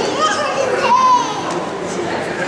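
Children chattering and calling out, several high voices overlapping, with rising and falling exclamations.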